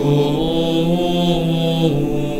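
A Latin hymn being sung: a voice holds one long note over a steady, sustained accompaniment, and moves to a new note near the end.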